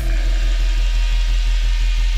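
Drum and bass track in a drumless break: one deep, sustained sub-bass note with a fast, even throb running through it, heavy and growling enough to sound like an idling engine.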